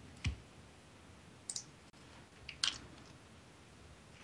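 Three or four faint, short clicks at irregular moments over quiet room tone.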